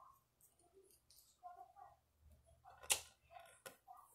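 Faint handling noises of hair being worked with a crochet hook, with a sharp click about three seconds in and a smaller one just after.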